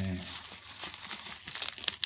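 Bubble wrap and thin plastic bags crinkling and rustling as they are handled and pulled off, with a few sharp crackles near the end.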